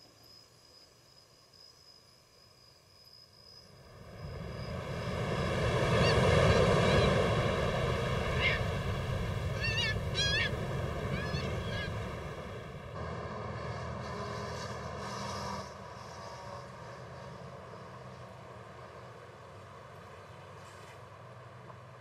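Ocean surf swelling up out of near quiet about four seconds in and washing steadily, with a few short rising bird calls over it. It drops to a quieter steady background of construction work near the end.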